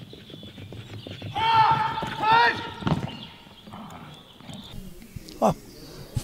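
A quick patter of a dog's paws running over the ground, then two drawn-out, high-pitched calls to the dog, each rising and falling in pitch.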